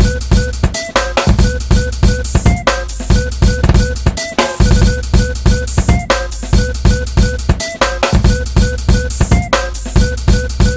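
Hip-hop breakbeat instrumental for b-boying: a steady drum-kit pattern of kick, snare and rimshot hits over a deep sustained bass, with a short high note repeating through the loop.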